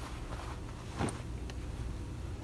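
Denim jeans being handled and put aside, a soft cloth rustle with a brief dull knock about a second in, over a steady low hum.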